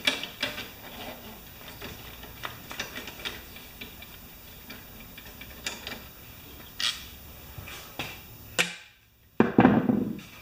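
Scattered light clicks and taps of a hand tool and small metal parts as the third fastener is undone at a Briggs & Stratton mower engine's carburetor. A brief gap near the end is followed by a louder burst.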